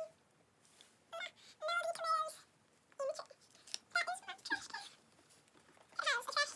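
A child's high-pitched voice in short bursts of a second or so, with quiet pauses between.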